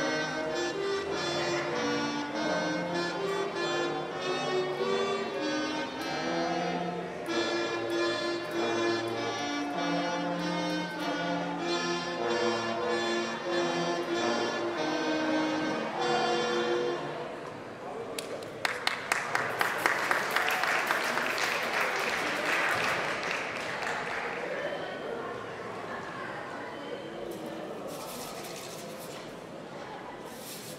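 A small student band of flute, clarinet, trumpet and trombone plays a piece through to its final note about 16 seconds in. Audience applause and cheering break out a couple of seconds later and die away, with a few last scattered claps near the end.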